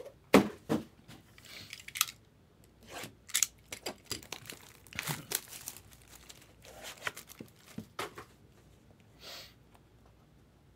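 Plastic wrap being torn and crinkled off a trading-card box, with irregular crackles and knocks as the cardboard box is handled, and a short rustle near the end as the lid is lifted.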